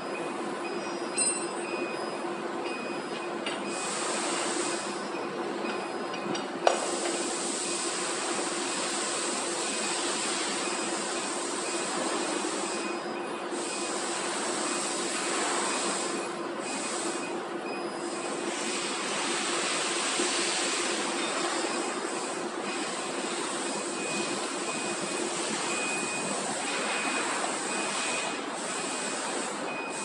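A steady machine hum and hiss of running factory equipment, with changing rustles of plastic film as a metal shaft is worked into the core of a PE film roll. There is one sharp knock about seven seconds in.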